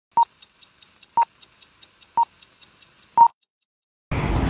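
Film-leader countdown sound effect: four short, steady high beeps one second apart, the last one a little longer and louder, with faint fast ticking, about five ticks a second, between them.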